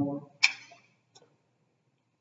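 The tail of a man's drawn-out "um", then a single short hiss about half a second in and a faint click a little later, with silence for the rest.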